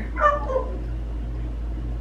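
A cat gives one short meow that falls in pitch, over a steady low hum.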